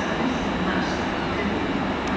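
A passenger train approaching along a station platform, its wheels and engine making a steady rumble.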